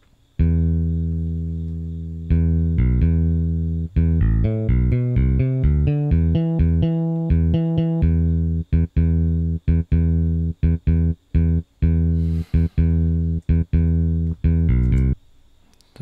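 Solo bass line from the ELF 707 karaoke accompaniment machine's built-in bass sound. It plays single low notes one after another, some held and some short and detached, and stops about a second before the end.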